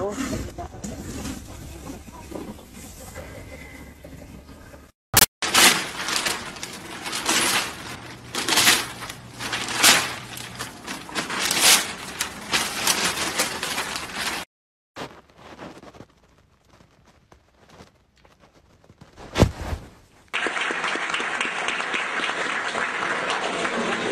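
A woman laughing hard in repeated bursts, then a crowd applauding steadily from about twenty seconds in.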